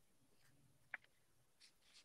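Near silence: faint room tone, with one short sharp click about a second in.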